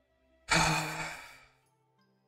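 A man's long sigh: a breathy exhale about half a second in that fades away over about a second, over faint background music.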